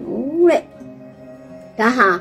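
A woman's speech with a pause, over soft background music of sustained, steady tones.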